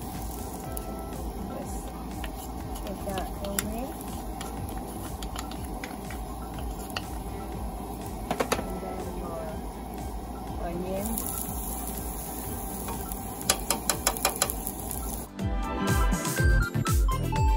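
Minced garlic sizzling in hot oil in a frying pan, under light background music. A run of clicks and taps comes near the end, then the music takes over.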